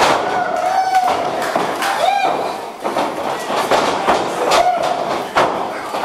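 Wrestling ring action: several sharp thuds and slaps of bodies hitting the mat and each other, over short shouts and yells.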